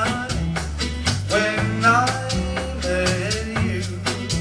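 Live band music: a sung melody over a bass line, guitar and a steady percussion beat.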